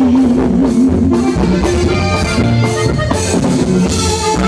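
Live norteño band playing an instrumental passage: button accordion and saxophone over bass guitar and drum kit, with a held, wavering lead note in the first second followed by quick runs of notes.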